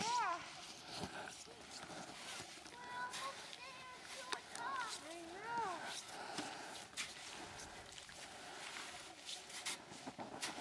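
Faint voices calling out, a few drawn-out rising-and-falling calls, with scattered crunching of footsteps in snow.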